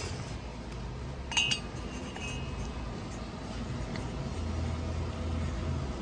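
A light metallic clink with a brief ring about a second and a half in, then a fainter tick, from metal engine parts being handled on a workbench. A low steady hum sits underneath.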